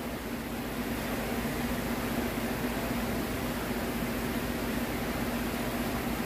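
Steady mechanical hum and hiss of room noise, with one low, unchanging tone and no other events.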